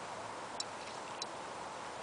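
A horse walking, heard faintly: two light clicks about half a second apart over a steady low hiss.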